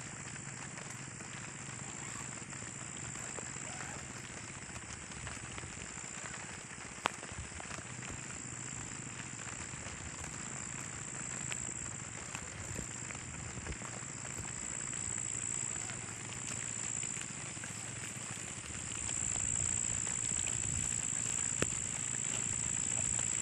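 Steady high-pitched chorus of night insects, with scattered clicks and rustling as a tent and its poles are handled; one sharp click about seven seconds in.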